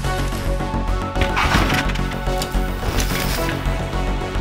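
Soundtrack music with a steady low bass. About a second and a half in, a brief noisy scrape of mountain bike tyres on rock cuts through it, followed by a few short clicks.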